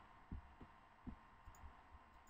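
Near silence: room tone with a handful of faint, short low thumps at irregular moments.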